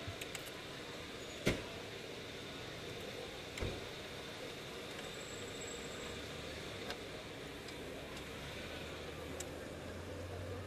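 Steady background hiss and low rumble with a few sharp knocks, the loudest about a second and a half in and another near four seconds.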